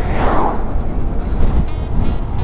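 Background music over heavy wind rumble on the microphone of a moving scooter. A fraction of a second in, an oncoming van passes close by with a brief rush that swells and fades.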